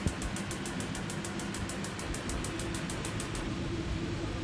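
Steady rumble and hiss of a lit gas stove burner under a wok, with a faint, rapid, even ticking in the high end that stops about three and a half seconds in. The oil is not yet hot, so nothing sizzles.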